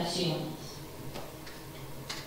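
A woman's voice through a microphone and PA trails off in the first half-second, followed by a short pause in the hall with two faint clicks.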